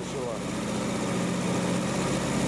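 Car engine idling steadily with an even low hum, warmed up after about five minutes of running, as the thermostat comes to the point of opening.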